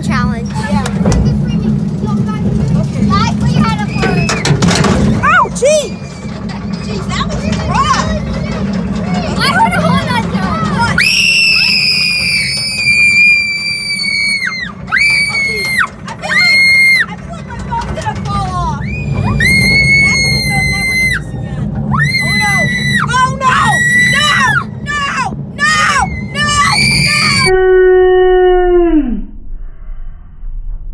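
Roller coaster ride heard from inside the car: a loud, steady rumble of the train on its track under riders' voices, and from about halfway through, riders screaming in repeated long, high-pitched cries. Near the end the rumble cuts off suddenly and a single falling wail follows.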